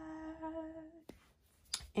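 A woman's voice humming one steady held note for about a second, then a couple of faint clicks.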